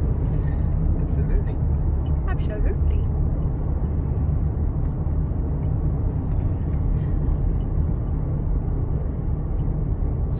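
Steady road and engine noise inside the cabin of a car driving along a highway: an even, low-pitched sound that holds at the same level throughout.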